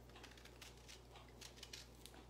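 Near silence with faint, scattered scratchy ticks of a sharp vegetable peeler shaving a strip of peel off an orange.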